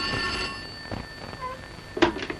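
Desk telephone's bell ringing, the ring stopping about half a second in. A knock at the very end as the receiver is lifted.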